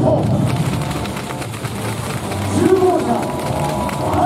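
Arena public-address announcer calling out players' names over introduction music, the drawn-out voice carried through the hall's loudspeakers.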